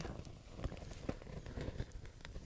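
Faint, irregular crackling of a freshly lit bundle of pine needles and small twigs catching fire, with scattered sharp pops.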